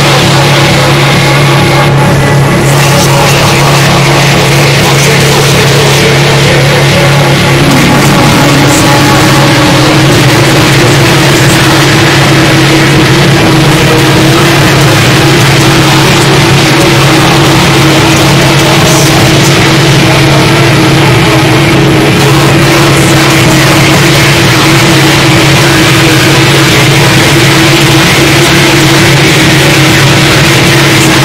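Harsh noise / power electronics music: a loud, unbroken wall of dense noise over a steady low drone. A higher droning tone comes in about eight seconds in and holds.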